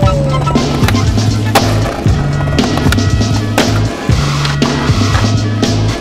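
Skateboard sounds, the wheels rolling on concrete and the board clacking, over music with a steady bass beat.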